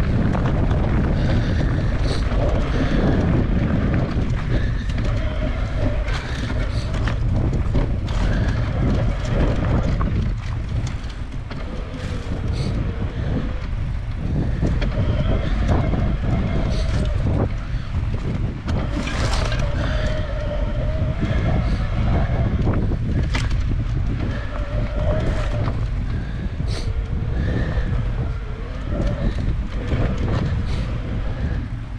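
Mountain bike ridden over a dirt and sand trail, heard from a handlebar-mounted camera: steady wind rumble on the microphone with tyre noise and scattered rattles and knocks as the bike goes over bumps.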